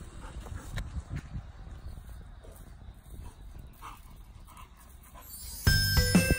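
Faint outdoor sound with a few soft dog noises from an Airedale terrier. Light, jingly background music comes back in near the end.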